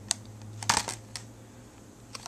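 Light clicks and taps of a cardboard-and-plastic phone-case box being handled: one click near the start, a quick bunch of them about three-quarters of a second in, and one more just after a second.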